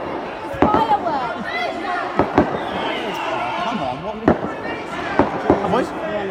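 Fireworks going off: several sharp bangs at irregular intervals, with children's voices and shouts around them.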